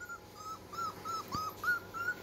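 Yellow Labrador puppy whimpering: a run of short, high whines, about four a second, as it strains to climb up a step.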